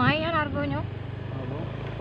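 A vehicle engine running with a steady low hum while the vehicle drives along, after a voice speaks briefly at the start.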